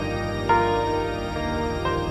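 Grand piano playing a slow piece: two melody notes struck about a second and a half apart, each left to ring over held lower notes.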